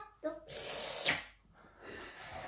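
A young girl sings the last word of a song, then a loud, hissy rush of breath follows about half a second in and lasts about half a second.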